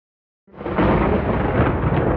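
A thunder-like rumbling noise opening an EDM track, starting about half a second in out of silence, swelling quickly and then holding steady and loud.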